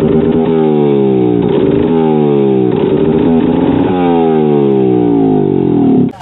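A bare Vespa scooter two-stroke single-cylinder engine, running on a test stand, revved over and over. Its pitch drops after each blip of the throttle, about once a second.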